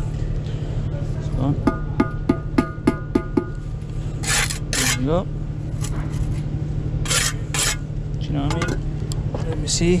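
A brick trowel tapping soldier bricks down into their mortar bed: a quick run of about seven sharp, ringing taps, then the trowel scraping twice across brick and mortar. A steady low rumble lies under it all.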